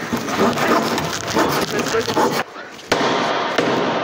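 Hand saw cutting in quick, crackling strokes that stop about two and a half seconds in, followed by a single click.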